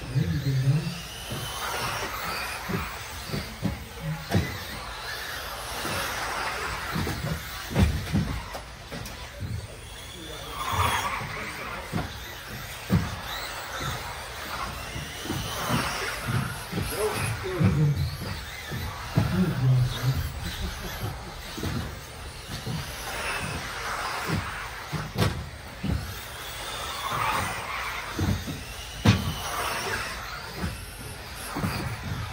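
Electric RC racing buggies with 17.5-turn brushless motors whining up and down in pitch as they accelerate and brake around the track, with frequent sharp knocks from landings and impacts.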